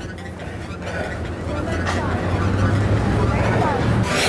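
Street traffic: a low, steady vehicle engine rumble that grows louder through the second half, with faint voices in the background.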